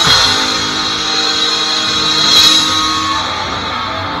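A live grindcore band's electric guitar and bass hold a chord and let it ring while the drums pause, with a cymbal swelling about halfway through. The held chord dies away a little after three seconds in.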